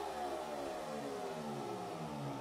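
A synthesizer tone rich in overtones gliding slowly and steadily down in pitch, played through a concert PA as the intro of a live electronic-rock song.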